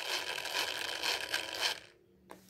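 Small 300 RPM geared DC motor running under PWM speed control, a steady brushy whirr, cutting out abruptly near the end as its speed is pushed down.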